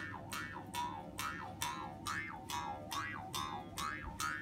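Ainu mukkuri, a bamboo mouth harp, twanged by jerking its string in a steady rhythm of about two and a half plucks a second. Each pluck starts with a sharp click and rings into a twang whose pitch bends down and back up.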